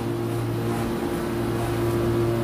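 A steady mechanical hum: a low drone with a couple of level tones above it, over a background wash of noise.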